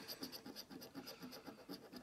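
A coin scraping the latex coating off a scratch card in quick, repeated strokes, about six a second, faint.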